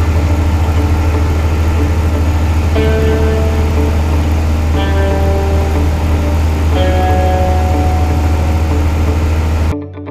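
Background music with slow notes changing about every two seconds, laid over the steady drone of a light aircraft's piston engine heard inside the cabin. The engine drone cuts off suddenly just before the end, leaving only the music.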